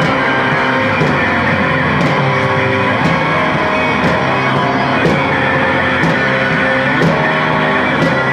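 Live rock band playing: sustained electric guitar chords over a drum kit, with a drum hit about once a second.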